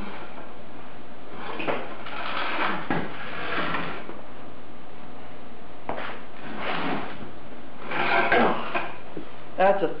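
Rusty car exhaust pipe being pulled out from under the car and dragged on a concrete floor: a series of irregular metal scrapes and clanks.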